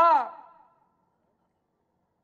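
A man's spoken word falling in pitch and trailing off in the first half-second, then near silence.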